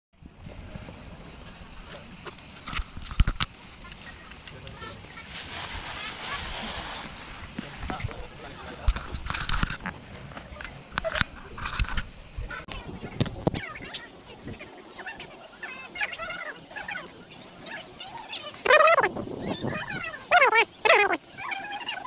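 Camera being handled: scattered knocks and rubbing over a steady high-pitched hiss that cuts off suddenly about halfway through. Voices come in near the end.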